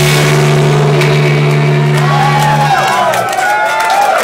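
A rock band's last sustained note ringing out after the drums stop, then cutting off about three seconds in. From about halfway, audience members start whooping and cheering.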